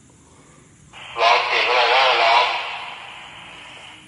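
A voice-like sound with a wavering, warbling pitch, loud for about a second and a half, then fading to a fainter drawn-out tail that cuts off suddenly.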